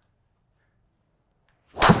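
After near silence, about two seconds in comes a single sharp crack: a TaylorMade Stealth 2+ driver striking a golf ball, with a short fading tail. The strike is slightly off-centre, high on the toe.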